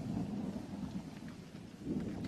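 A low, steady rumbling noise with a faint light patter above it, swelling near the end.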